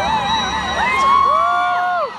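A large crowd cheering, many high voices whooping and shouting over one another.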